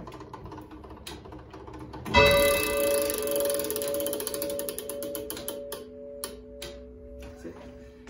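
The 1670 turret clock striking one o'clock: after a few clicks from the movement, its hammer hits the bell once about two seconds in. The bell rings on with several tones and slowly fades.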